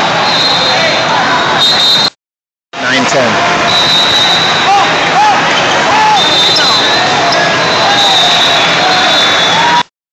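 Hubbub of a large sports hall with several volleyball games going on: many voices calling and shouting, over thin shrill tones that come and go. The sound cuts out completely for about half a second just after two seconds in, and again at the very end.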